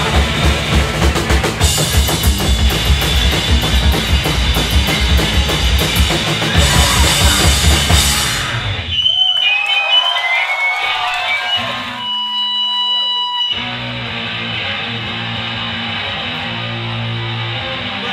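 Hardcore punk band playing live, with fast, loud drum kit and distorted guitar, stops abruptly about eight seconds in. Crowd voices follow, then a few seconds of steady amplifier feedback tones. Low held guitar and bass notes and amp hum carry on before the next song.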